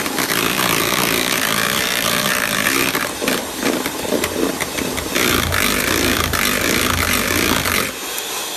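Electric mixer running, its beaters whipping green-coloured whipped cream (chantilly) in a metal bowl to fix cream that has turned porous and full of air. The motor stops right at the end.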